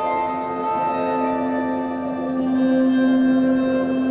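An indie band plays a slow instrumental passage without vocals: sustained, ringing chords over one steady held low note, with the upper notes shifting slowly.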